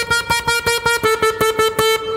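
Button accordion sounding one reedy mid-high note over and over in a quick staccato pulse, about six notes a second, with no bass beneath it.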